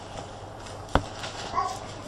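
A single sharp knock about a second in, followed by a brief, fainter short sound a little over half a second later.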